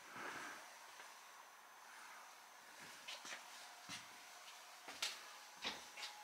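Faint room tone inside a steel submarine hull with a faint steady hum, and about five soft footsteps on the deck in the second half, the loudest about five seconds in.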